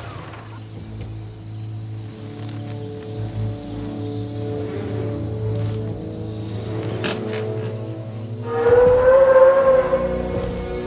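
Orchestral film score: a low sustained drone under held notes, swelling louder with a high held note about eight and a half seconds in.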